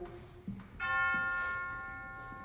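A bell is struck once, about a second in. Its several steady tones ring on and slowly fade away.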